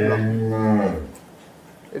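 A Holstein-Friesian dairy cow mooing: one low, steady call that ends about a second in.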